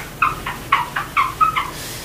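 Handheld whiteboard eraser rubbing across a whiteboard, giving about six short, high squeaks in quick succession, ending after a second and a half.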